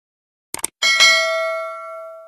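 Subscribe-animation sound effect: two quick mouse-style clicks about half a second in, then a bright notification-bell chime, struck twice in quick succession, that rings on and slowly fades.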